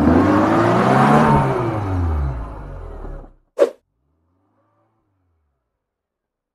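Car engine revving sound effect, its pitch rising and then falling over a loud rushing hiss, as for a tyre burnout. It cuts off a little over three seconds in, a single sharp hit follows, and then it goes silent.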